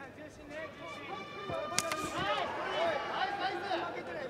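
Voices shouting around a kickboxing ring, with a single sharp smack a little under two seconds in, a strike landing.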